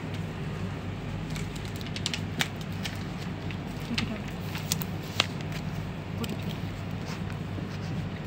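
Scattered light clicks and rustles of small objects being handled, over a steady low hum.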